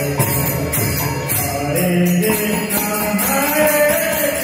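Devotional chanting sung over music, with jingling percussion sounding steadily throughout.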